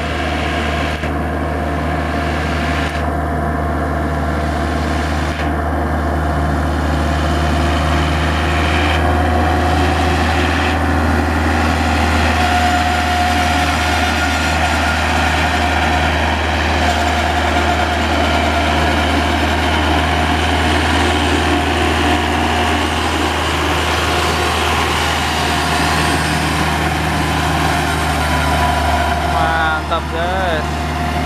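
Iseki compact four-wheel tractor's diesel engine running steadily under load while it pulls a rear rotary tiller through a flooded rice paddy. The level rises a little over the first few seconds.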